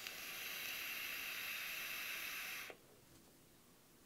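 A long draw on a Joyetech Cuboid Mini sub-ohm vape, its 0.25-ohm stainless steel notch coil firing at 55 watts: a steady hiss of air pulled through the tank and coil. It cuts off suddenly a little under three seconds in.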